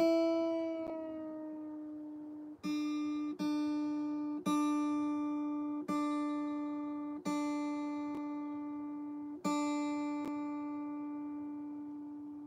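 Acoustic guitar being tuned: one string plucked again and again, about seven times, each note left ringing and fading away. The pitch sags slightly on the first note as the string is adjusted, then holds steady.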